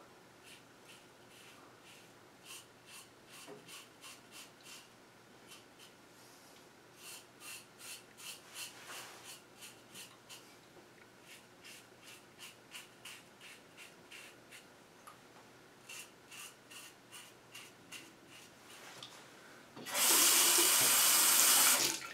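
Short scraping strokes of a Gem Micromatic Clog Proof single-edge razor cutting stubble on the face, about three a second, in runs. Near the end a tap runs into the sink for about two seconds, much louder than the strokes.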